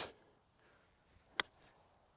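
A single sharp click about one and a half seconds in, as a golf iron's clubhead makes contact at the bottom of a swing. The rest is quiet.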